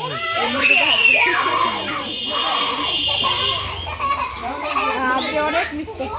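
Small children's voices and adults talking over each other, with one child's high-pitched shout about a second in.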